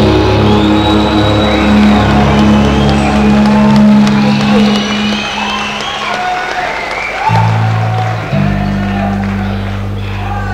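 Live shoegaze band closing a song: electric guitar and bass drones held and ringing out, slowly getting quieter, with the low notes changing twice near the end. Crowd cheering starts underneath. Heard on an audience cassette recording.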